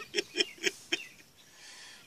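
A man laughing: a run of short ha's, about four a second, that dies away about a second in.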